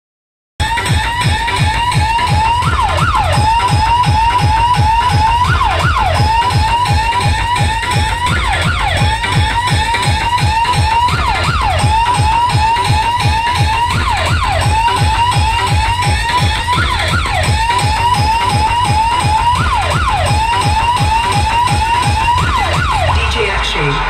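DJ competition track played very loud through a stacked speaker tower: a fast-repeating electronic siren-like tone with falling swoops every couple of seconds, over rapid heavy bass thumps. It starts suddenly just after the beginning.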